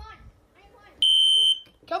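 Electronic smoke alarm sounding a high-pitched beep, on for about half a second and off for about half a second: one beep about a second in and the next starting at the end. It is going off as the fire alarm calling for an evacuation.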